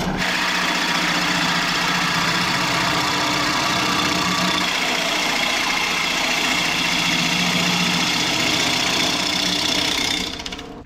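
Wood lathe running with a steady motor hum while a turning gouge cuts a spinning red cedar blank, giving a continuous hissing scrape.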